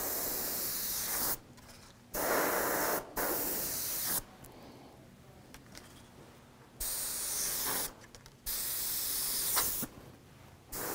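Airbrush spraying paint in about five short bursts of hiss, each up to a second or so long, as the trigger is pressed and let go, with quieter gaps between.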